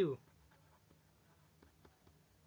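Faint scratching and light ticks of a stylus writing on a tablet, a couple of small ticks near the end.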